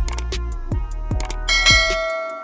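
Background electronic music with a steady beat; about one and a half seconds in, a bright bell chime rings out and fades, the notification-bell sound effect of a subscribe-button animation.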